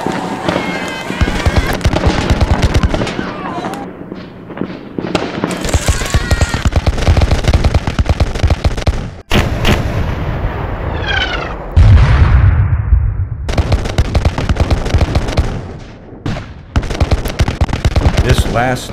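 Dense, crackling battle gunfire from a line of reenactment muskets firing, the shots packed close together with shouting among them. A heavy thump of camera handling comes about twelve seconds in.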